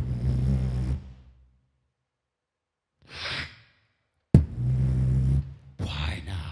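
Beatboxing into a microphone: a sharp hit followed by a low buzzing bass held for about a second, a short breathy exhale about three seconds in, then a second hit and buzzing bass about four seconds in.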